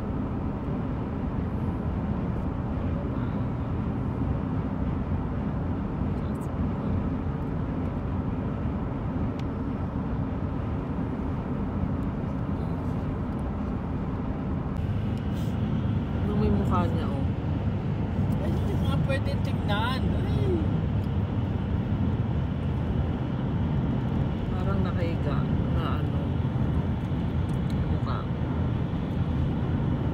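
Steady road and engine noise inside a moving car's cabin, a low rumble that grows a little louder about halfway through. A few brief voice-like sounds come through around the middle.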